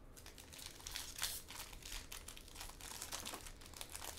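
Foil wrapper of a Bowman baseball card jumbo pack crinkling with a run of faint, crackly ticks as it is torn open by hand.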